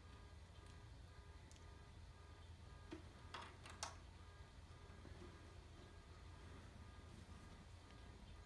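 Near silence over a steady low hum, broken by two or three faint clicks of plastic LEGO pieces being handled, a little past the middle.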